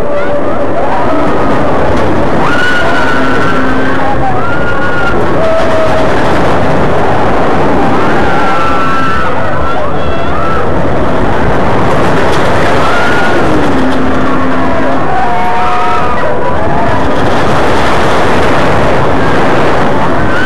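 Ring of Fire loop ride in motion, heard from a rider's seat: a loud, unbroken rushing noise, with short wavering calls from voices scattered over it.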